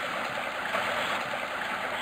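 Chalk-stream water pouring from a row of culvert pipes under a small weir and splashing into the pool below: a steady, even rushing.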